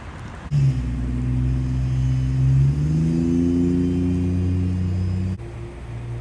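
A motor vehicle's engine running loudly and steadily, its pitch stepping up partway through as it revs. The sound starts and stops abruptly.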